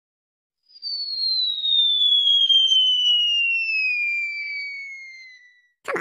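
A long whistle sound effect that starts about a second in and glides steadily down in pitch, fading away near the end.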